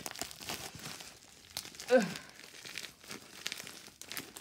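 Plastic packaging being crinkled and torn open by hand, with quick crackling rustles throughout. About halfway through, a short vocal sound falling in pitch comes from the person opening it.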